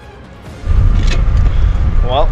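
Faint tail of background music, then about half a second in a loud, gusty low rumble of wind buffeting the microphone while riding a bicycle.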